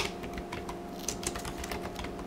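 Typing on a computer keyboard: a run of light, uneven key clicks, several a second, over a faint steady hum.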